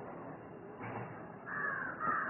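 A bird calls once near the end, over faint steady room noise.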